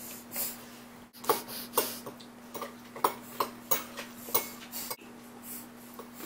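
A baby making short sniffing snorts through his nose, repeated irregularly about twice a second, over a steady low hum.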